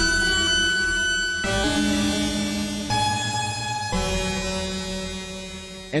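Dissonant, creepy synthesizer sound from a Pigments 4 patch built from heavily detuned unison saw waves and added noise, run through a feedback comb filter, heavy compression and a quarter-note delay. It plays a run of held chords that change abruptly about four times and fade toward the end.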